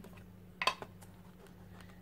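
A plastic ink pad handled and dabbed onto a mounted rubber stamp to ink it: one short sharp click about two-thirds of a second in, then a couple of faint ticks, over a steady low electrical hum.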